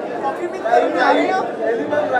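Indistinct chatter of voices, with softer speech rising and falling through the middle.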